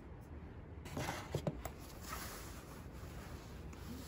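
Faint handling of eggs and a paper-pulp egg carton, with a few light taps about a second in.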